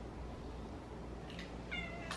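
A young Siberian cat gives a short, high-pitched meow that starts near the end, over a quiet room hum.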